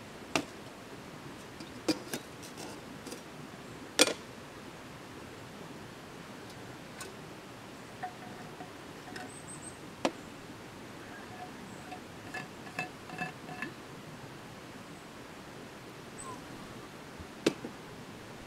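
Sharp clicks and knocks of metal camping gear being handled and set down on an aluminium folding table: a gas canister with its camp stove and a steel thermos. The loudest knock comes about four seconds in, and a run of light ringing metallic clinks comes about two-thirds of the way through.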